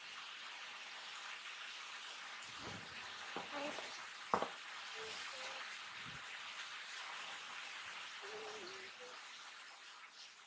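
Steady faint hiss with a few light clicks, the sharpest about four and a half seconds in, and several short faint low tones.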